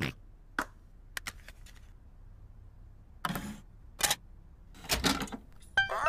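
Cartoon computer sound effects as a game disc is loaded: a few sharp clicks, then three short noisy bursts. A bright game jingle starts right at the end.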